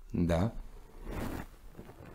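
A brief spoken sound, then a short dry rasp about a second in as a carved stone is turned in the hands, stone rubbing against skin.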